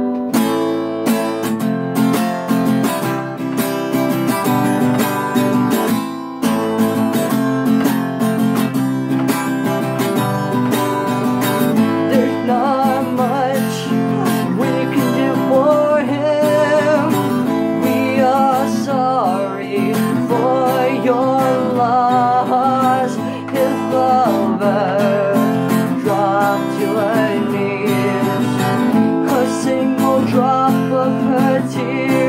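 Acoustic guitar strummed steadily in an instrumental passage. From about twelve seconds in, a singing voice comes in over the strumming.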